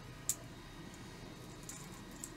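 Metal plugs on a handful of video cables being handled, giving one short sharp click about a third of a second in and a fainter tick near the end, over a faint steady hum.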